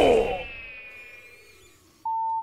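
A ringing sound effect from the animated episode's soundtrack, several tones at once, fading away steadily. It follows a loud, falling cry just before.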